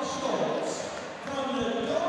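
A ring announcer's voice over the hall's PA system, with long drawn-out words echoing around a large hall, and a few dull knocks near the end.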